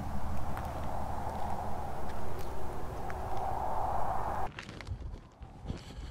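Pickup truck's engine idling steadily while backing a boat trailer down a ramp, with outdoor noise over it. The sound cuts off abruptly about four and a half seconds in, leaving quiet with a few faint clicks.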